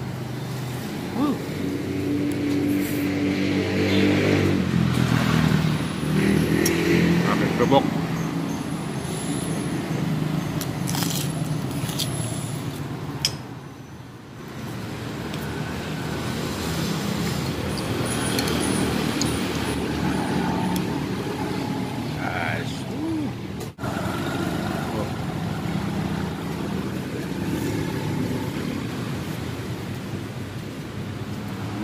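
Busy roadside ambience: indistinct background voices and passing road traffic, with occasional sharp clinks of a metal spoon against a glass plate.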